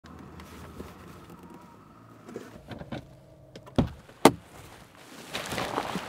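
A low steady hum, then two sharp knocks about half a second apart near the middle, followed by a rising rustle near the end.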